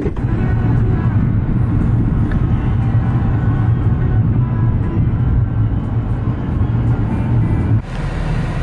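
Steady low rumble of a car's cabin while driving, with faint music playing over it.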